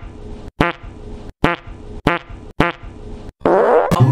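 Comic fart sound effect repeated about five times, short buzzy blasts less than a second apart, each cut off abruptly. Near the end a louder rushing noise leads into music.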